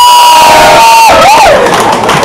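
A crowd cheering and shouting. One voice holds a long high shouted note for about a second, then gives a shorter shout that rises and falls.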